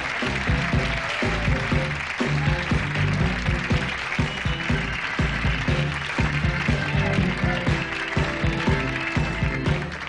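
Band music going into a commercial break: an upbeat tune with a steady drum beat and a bass line.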